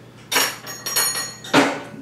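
A steel go-kart live axle clanks against its bearings and hangers as it is worked out of the frame. There are several sharp metallic knocks, each with a brief ringing tail.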